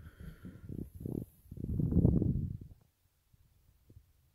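Low rumbling handling noise from the camera being moved: several short bursts, with the longest and loudest about two seconds in.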